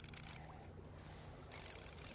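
Faint steady noise of open water and wind with a low steady hum underneath.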